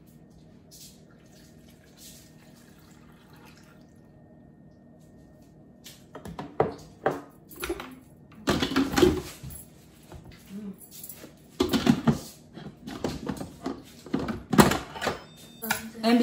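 Water poured from a glass measuring cup into an Instant Pot, faint at first. From about six seconds in comes a run of clanks and knocks as the pressure cooker's lid is handled and fitted onto the pot.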